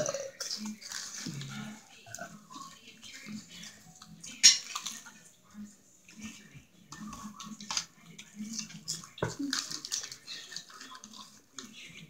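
A person eating a veggie sub close to the microphone: wet chewing and lip-smacking made up of many short, irregular mouth noises, with two louder sharp sounds about four and nine seconds in.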